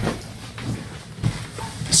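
A few soft, irregular thumps of footsteps and of the phone being handled, over a steady low electrical hum.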